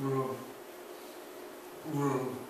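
Two short, buzzy voiced hums from a man, one at the start and one near the end, over a faint steady hum.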